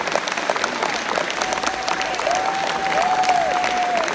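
Audience applauding steadily at the end of a song, dense clapping throughout.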